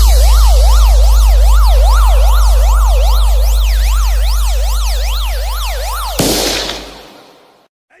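Police siren sample opening a DJ remix: a fast rising-and-falling wail, about two sweeps a second, over a loud, deep sustained bass note. Both stop about six seconds in, leaving a fading whoosh, and a voice begins saying 'Hey' at the very end.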